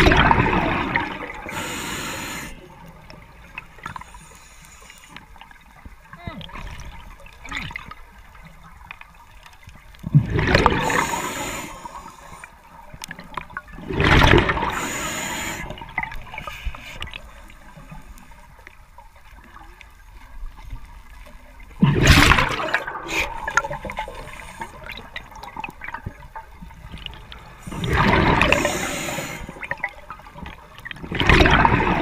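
A diver's breath bubbling through a regulator underwater: five loud bursts of gushing bubbles at uneven intervals of several seconds, with a faint crackle of small clicks between them.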